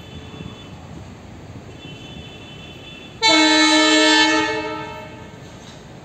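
Indian Railways diesel locomotive horn sounding one loud blast about three seconds in. The blast holds for about a second, then dies away over a steady low rumble from the train.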